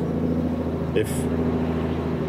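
A steady low machine hum with no change in pitch or level.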